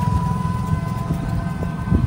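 Ride in an open-sided rickshaw-type vehicle: a continuous low rumble of motor and road with a steady high whine over it, and a short knock near the end.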